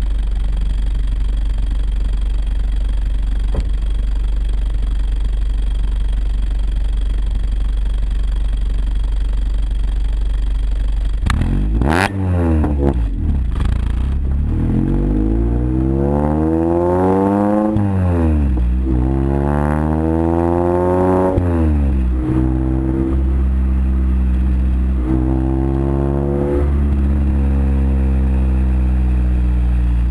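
Car engine breathing through an aftermarket race exhaust with long-tube headers and custom baffles, idling steadily at first. About eleven seconds in it is revved: the pitch climbs and falls two or three times, holds higher for a few seconds, rises once more, then settles.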